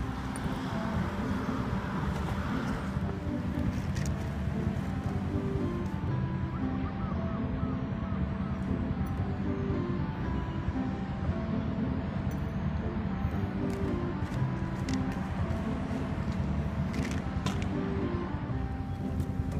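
Soft background music of single held notes changing in pitch, over a steady low rumble of outdoor noise.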